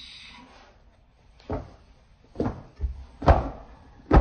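Four sharp thumps, irregularly spaced, with the last one near the end the loudest.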